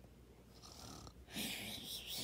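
A person making a mock snoring sound, a breathy snore starting a little over a second in after a quiet start.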